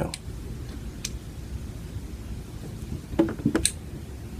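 A few faint clicks as a Dremel quick-connect attachment is tightened down by hand, over a low room rumble. The clicks are sharper and closer together near the end.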